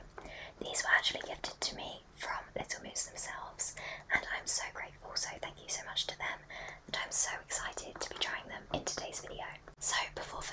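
A woman whispering close into a microphone, in short phrases with brief pauses between them.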